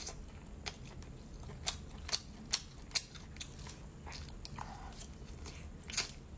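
Close-miked chewing of spicy braised pork. Four sharp mouth clicks come about half a second apart in the middle, with a few softer ones either side.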